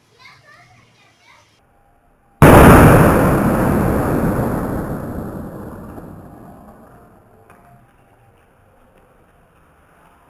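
A block of sodium metal exploding on contact with floodwater: one sudden loud blast about two and a half seconds in, followed by a long rush of noise that fades away over about five seconds.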